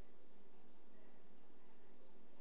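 Steady background hiss of room tone and microphone noise, with no distinct sound.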